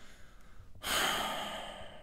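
A man's long sigh, a breathy exhale that starts just under a second in and fades out gradually.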